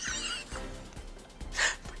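A woman's high-pitched, squealing laughter, fading after the first half-second, over a steady background music bed, with a short breathy laugh near the end.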